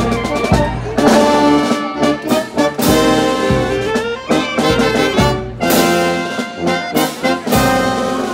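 Brass band playing a pasacalle march: trumpets and trombones carry a melody in held notes over regular percussion strikes.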